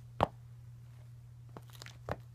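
A single sharp thump of a basketball sneaker's rubber sole on a wooden floor just after the start, followed by a few faint light taps near the end.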